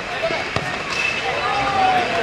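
A football kicked once on a dirt pitch, a single sharp thud about half a second in, over crowd voices and shouting.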